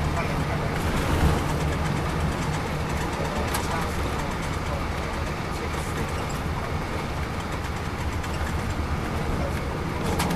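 Interior of a 2002 MCI D4000 coach underway: the Detroit Diesel Series 60 engine running steadily under road and tyre noise.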